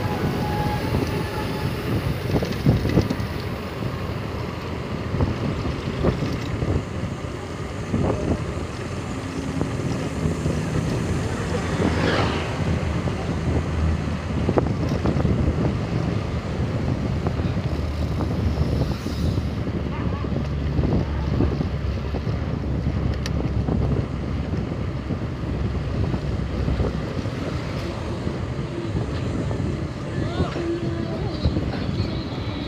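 Wind noise on the microphone while cycling along a road: a steady, low rushing noise with no pause.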